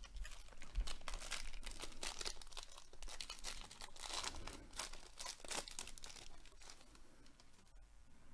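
Crinkly wrapper of a Topps baseball card pack being torn open and crumpled by hand: a busy run of ripping and crackling that dies down about six seconds in.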